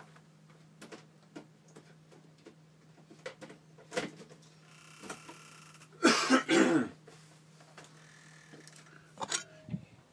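A man coughing twice in quick succession about six seconds in, amid scattered small knocks and clicks over a steady low hum.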